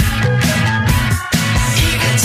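Music: a full-band song with a steady beat.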